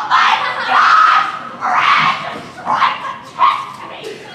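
A performer's voice giving about four loud, harsh yells in quick succession, with the longest at the start.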